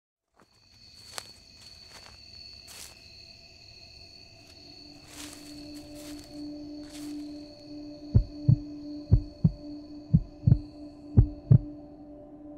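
Dark ambient intro drone with steady high tones and scattered crackles of noise. From about eight seconds in, a heartbeat effect comes in: four double thumps about a second apart, the loudest sounds.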